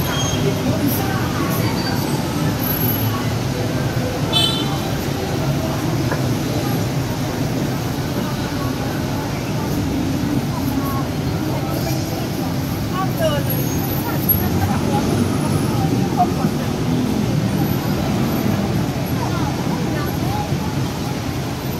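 Steady street ambience: a continuous rumble of traffic with the voices of passers-by mixed in.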